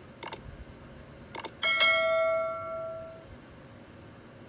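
Subscribe-button animation sound effect: two short mouse clicks, then a bright bell ding that rings for about a second and a half and fades away.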